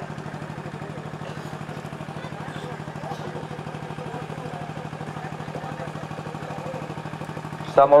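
A steady low engine-like hum with a fast, even pulse, under faint distant voices.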